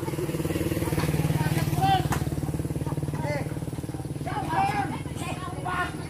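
A small motorcycle engine running close by, swelling to its loudest about a second or two in and then easing off, with several people shouting short calls over it, more of them near the end.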